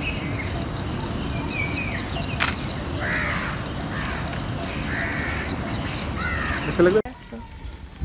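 Outdoor ambience with harsh, cawing bird calls repeating every second or so over a steady background hiss. A louder call comes just before the sound cuts suddenly to a quieter bed near the end.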